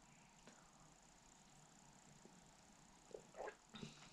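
Near silence: room tone, with a few faint short sounds about three seconds in.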